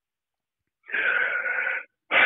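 A man's audible breath, about a second long, starting almost a second in. It sounds thin and phone-like, cut off above the mid treble.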